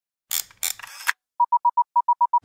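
Intro sound effects: three short clicking, rattling noises, then a quick run of four short beeps at one steady pitch, like a transmission signal.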